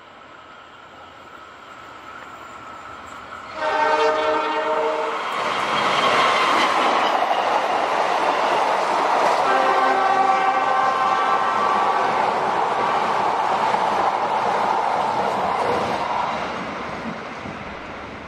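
CC206 diesel-electric locomotive and its passenger train passing through the station without stopping. The horn sounds a short blast about four seconds in and a longer one around ten seconds. Both come over the growing rumble and wheel clatter of the passing coaches, which fades away near the end.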